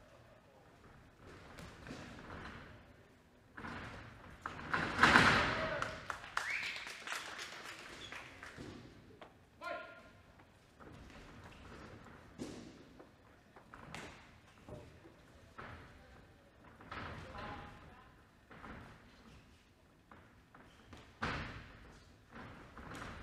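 Thuds of gloved punches and kicks landing during a kickboxing exchange, in the echo of a large hall, with shouting voices from ringside; the loudest moment is a burst of shouting about five seconds in.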